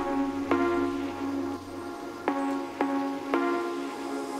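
Background music: sustained instrumental chords, with a new chord struck every half second to a second.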